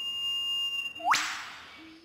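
Eastern whipbird call: a long, steady whistled note, then a sharp whip-crack that sweeps steeply upward about a second in and fades away.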